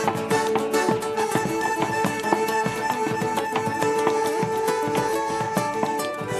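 Live malambo music with folk instruments playing a held note, over many quick, sharp stamps of the dancer's boots on the stage in zapateo footwork.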